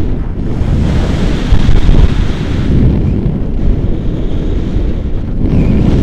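Airflow buffeting an action camera's microphone on a tandem paraglider in flight: a loud, unsteady rush of wind, gusting hardest about one and a half seconds in.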